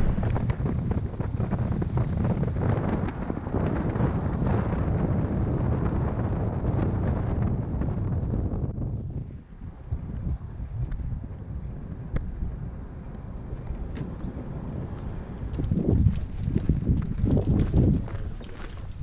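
Wind and road noise on a camera mounted outside a moving vehicle, steady and dense, dropping off about halfway through as the vehicle slows. Near the end come a few low thumps and gusts as the camera is carried on foot.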